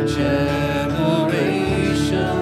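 Live worship-band music: a woman singing a held, sustained line over acoustic guitar and electric bass.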